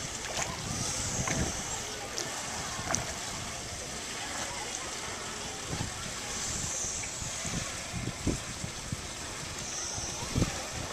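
Splashing from a swimmer's flutter kick at the pool surface, with irregular small splashes over a steady wash of water noise.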